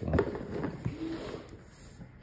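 Cardboard board-game box handled and set down on a wooden table: a knock just after the start, then lighter rubbing and shuffling of hands on the cardboard that fades off.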